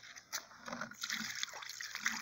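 Water being poured out of a bucket onto the ground, a faint pour and splash that grows stronger about a second in.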